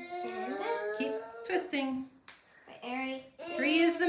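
A child's voice making drawn-out, sing-song sounds without clear words, in several short phrases, the loudest near the end.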